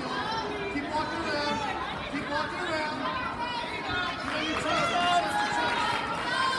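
Crowd chatter: many overlapping voices of spectators talking and calling out at once, with no single clear speaker.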